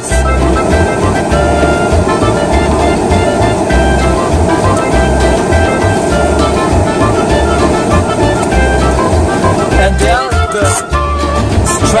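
Music with a repeating bass beat under held melodic tones.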